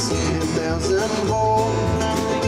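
Live country band: a man singing and playing an acoustic guitar, over upright bass and drums.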